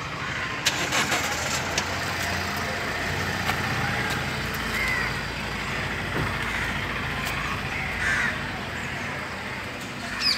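Street ambience: a vehicle engine running nearby throughout, with crows cawing a few times. A few sharp clicks come about a second in.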